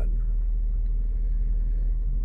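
A 50 Hz test tone playing through the car's subwoofer: one deep, steady hum that holds the same pitch and level throughout.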